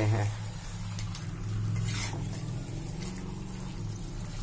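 Chicken and potato pieces frying in masala in a kadai, being stirred: a faint sizzle and light scrapes over a steady low hum.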